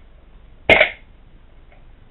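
A WE M14 gas blowback airsoft rifle fires a single shot on CO2 from a prototype magazine: one sharp report with a short tail as the bolt cycles. The shot shows the magazine works.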